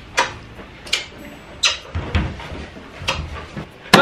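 Kissing: a run of loud, sharp lip smacks, five or six spread irregularly across a few seconds.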